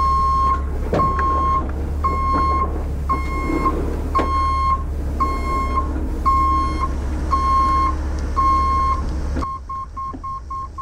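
Heavy rotator tow truck's reverse alarm beeping about once a second over the truck's low engine rumble as it backs up. Near the end the rumble drops away and the beeps turn short and quick, about three a second.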